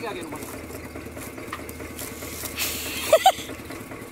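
Sugarcane stalks rustling and knocking against each other as bundles are dragged off a trolley, over a steady low engine hum.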